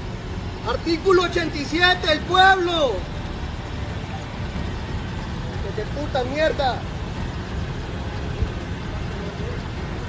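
A man shouting angrily in raised bursts during the first few seconds and once more past the middle, over a steady low rumble of vehicle noise in the street.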